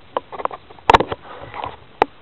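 Burning fabric crackling and sputtering, with irregular small pops and one sharp crack about a second in.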